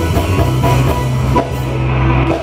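Live Congolese gospel band playing an instrumental passage, with drums and a heavy bass line at full volume.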